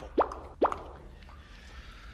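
Two short pops, each sweeping quickly upward in pitch, about half a second apart.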